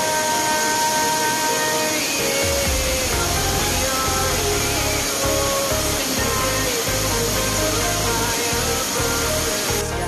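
Background pop music, its bass line entering about two and a half seconds in, laid over the steady rushing of a waterfall.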